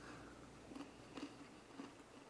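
A few faint crunches of a stone-ground cracker being chewed.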